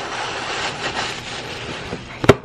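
Steady rushing, rustling noise of clothing fabric rubbing against the phone's microphone held close to the body.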